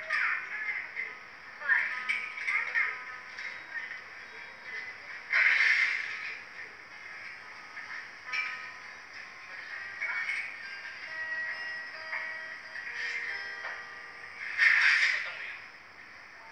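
Acoustic guitar being played, with a voice over it. Two short, louder noisy bursts come about five and a half seconds in and again near the end.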